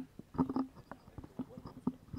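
A run of soft, irregular knocks and clicks, several a second, close to the microphone.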